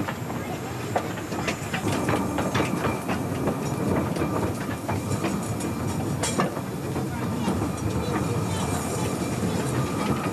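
Small narrow-gauge steam train running along the track, a continuous rumble with irregular clicks and rattles from the wheels and carriages.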